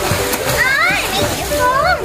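Water splashing as a child in a life jacket paddles with his arms through a swimming pool, among children's shouts and high squeals.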